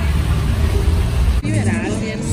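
Water jets of a large plaza fountain splashing, a steady noisy rush over a low rumble. It cuts off suddenly about one and a half seconds in, replaced by music and voices.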